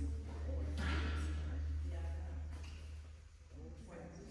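Faint, indistinct voices in a large hall over a steady low hum.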